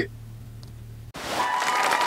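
Audience applause breaking out suddenly about a second in, likely added to the curtain end card; before it, only a low steady hum.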